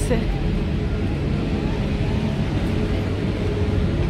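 Steady low rumble of ferry-landing ambience, with engines and wind running evenly throughout.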